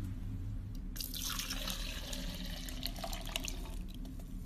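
Water running for about two and a half seconds, starting about a second in, with a few light clicks near the end.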